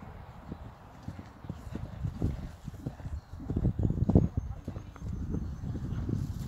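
Horse's hooves thudding on turf at a canter, growing louder as it draws near and loudest about four seconds in.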